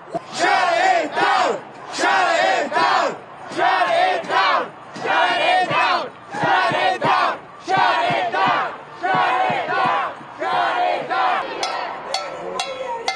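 Crowd of protesters chanting a slogan in unison, shouted in rhythmic phrases that repeat about every second and a half with short breaks between them.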